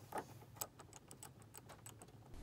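Faint clicks and ticks of a VGA cable plug and its metal D-sub shell being fitted onto a small hot-glue-potted adapter: a couple of sharper clicks in the first second, then a string of lighter ticks.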